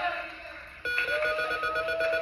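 A large game-show prize wheel is pulled and starts spinning about a second in, its pegs clicking rapidly past the pointer. Studio audience noise rises suddenly with it. The sound is heard through a TV's speaker.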